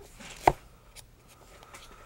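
Fingertips tapping and brushing along the spines of books on a shelf: one sharp tap about half a second in, a lighter one a second in, then faint ticks.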